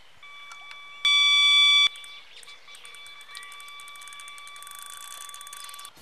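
Electronic carp bite alarm sounding a steady high-pitched tone, the sign of a take as a fish pulls line. The tone is loud for just under a second about a second in, then carries on fainter, while a rapid ticking builds toward the end.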